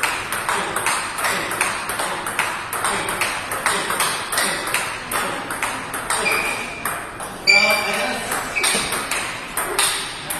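Table tennis ball being hit back and forth in a fast drill: sharp clicks of the ball off the paddles and bounces on the table, a few a second in a quick, even rhythm. A short voice call is the loudest thing, about seven and a half seconds in.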